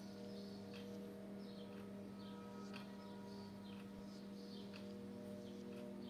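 Quiet steady hum with faint, scattered scrapes and small squeaks of a knife blade worked around the edge of a plastic tub, freeing a slab of set gel soap.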